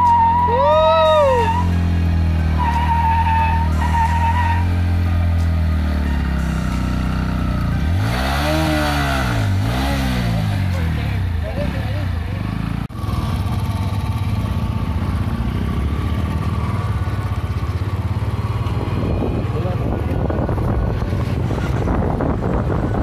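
Bajaj Pulsar NS160's single-cylinder engine running, blipped up and down twice in quick succession about eight to ten seconds in, then running on with a rougher, noisier sound.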